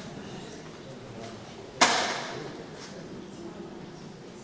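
A single sharp bang a little under two seconds in, trailing off over about half a second.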